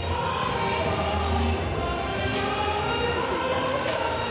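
Mixed choir of men's and women's voices singing, the voices holding and gliding between sustained notes without a break.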